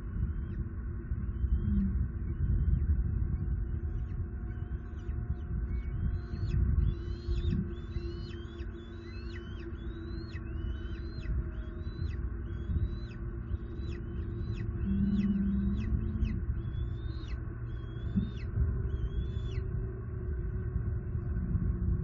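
Bald eagle calling a long series of short, high, thin notes, each rising then dropping sharply, about one and a half a second and loudest in the middle and near the end. The calls are typical of an adult eagle on alert. A steady low rumble runs underneath.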